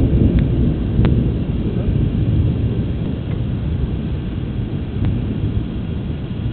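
Thunder rumbling low and slowly dying away, with a few faint clicks over it.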